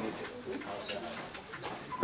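A quiet pause in amplified speech: a bird calls softly over faint background noise.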